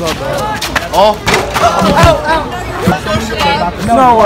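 Several players and spectators talking and calling out over one another, with a few sharp knocks among the voices.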